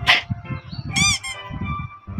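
Cartoon squeak sound effect about a second in: a quick run of squeaky chirps, each rising and falling in pitch, over quiet children's background music.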